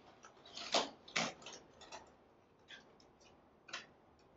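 Dried, silver-painted monstera leaves and stiff New Zealand flax leaves being handled as the flax is pushed through the holes in the monstera. They make a few short, dry crackles and clicks, the loudest about a second in and another near the end.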